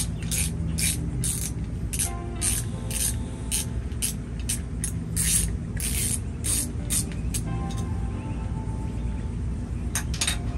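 Hand ratchet clicking in short strokes, about two a second, as it works the timing belt tensioner bolt on a Honda B-series engine to slacken the belt.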